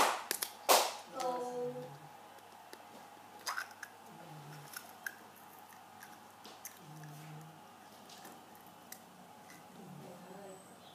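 Wet squelches of shower gel being squeezed from a plastic bottle into a small glass bowl, several sharp strokes in the first second, then scattered faint clicks and taps. A faint voice is in the background.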